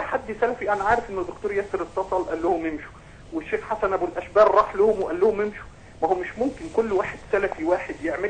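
Speech only: a man talking over a telephone line into a live broadcast, with short pauses.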